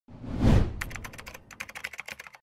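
Title-card sound effect: a swelling whoosh that peaks about half a second in, followed by a quick run of keyboard-like typing clicks.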